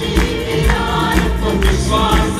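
Live worship band: several voices singing together with acoustic guitar and keyboard accompaniment, over a steady beat of about two pulses a second.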